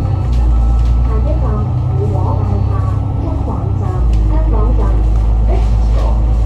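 Double-decker bus (Alexander Dennis Enviro500 MMC) engine and drivetrain running steadily under way, heard from inside on the upper deck; its low rumble grows stronger about four seconds in. Voices are heard over it.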